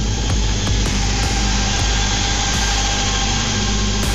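Modular synthesizer playing a dense, steady electronic texture: a low drone under a wash of noise, with a few held tones.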